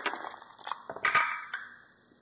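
A handful of plastic polyhedral dice rattled together, then thrown into a felt-lined dice tray. A few sharp knocks about a second in as they land, tumble and settle.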